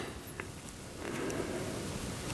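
Faint handling noise from the knife clamp of a Work Sharp Precision Adjust sharpener being tightened back down on a blade by its thumb screw: soft rustling with one light click about half a second in.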